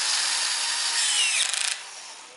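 Cordless drill-driver running as it drives an oil-pump mounting bolt into a VAZ engine block, its clutch set to 10 N·m. There is a whine falling in pitch partway through, and the motor stops sharply near the end.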